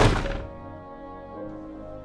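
A single loud thunk right at the start, dying away within half a second, over soft background music with long held notes.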